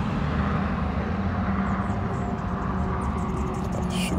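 Steady low background rumble with a faint, even hum.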